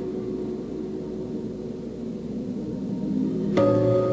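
Soft background score music of held, sustained notes. Near the end a new chord comes in sharply and a little louder.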